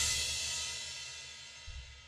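A crash cymbal left ringing and fading steadily away after the rock band stops playing.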